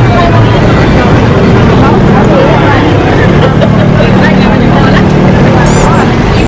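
Busy street noise: a crowd of people talking amid passing vehicle traffic, with a steady low engine hum joining in the second half.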